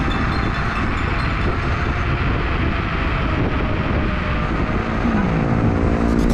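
Wind rushing over the microphone and tyre noise from an electric scooter riding at about 55 km/h on a city road, a steady loud rush. Near the end a low tone slides downward in pitch.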